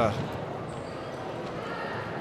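Steady low background noise of a large indoor sports hall, with faint distant voices near the end.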